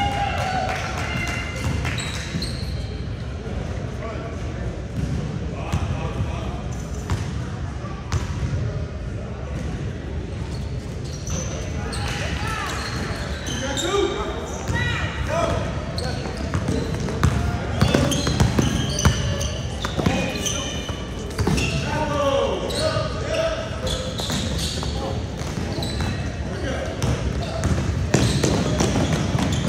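A basketball bouncing on a hardwood gym floor during a youth game, with players' and spectators' voices calling out in the echoing hall. The bounces and voices come thicker and louder in the second half, once play is running up the court.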